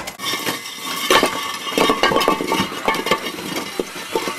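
Small electric four-wheel-drive robot driving over obstacles: a dense run of irregular clinks and knocks from its wheels striking hard surfaces, over a faint steady whine.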